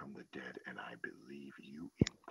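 Faint man's speech, low in the mix: the original voice heard quietly beneath a Russian voice-over during a pause in the translation.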